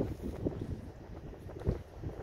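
Wind rumbling on the phone's microphone, with a dull thump near the end.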